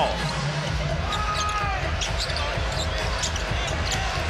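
Basketball dribbled on a hardwood arena floor, with sneakers squeaking, once falling right at the start and once held for about half a second a second in, over a steady crowd murmur.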